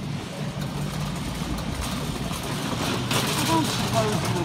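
Supermarket background noise: a steady low hum with general store noise. A voice starts near the end.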